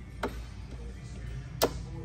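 Two sharp clicks about a second and a half apart, the second louder: the Triumph Rocket 3 R's folding passenger foot peg being swung out into position.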